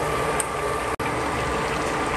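Squid adobo bubbling at a steady boil in a shallow pan, an even watery bubbling hiss, broken by a brief dropout about a second in.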